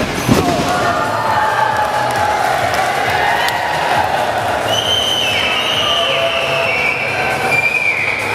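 A heavy thud of a body hitting the wrestling ring mat about a quarter second in, over continuous arena crowd noise with long held high tones.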